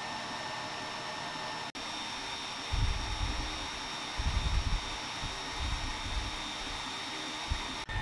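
Algolaser Alpha 22W diode laser engraver running an engrave: a steady airy hiss with a few high whining tones. From about three seconds in, irregular low hums come and go as the gantry moves the laser head.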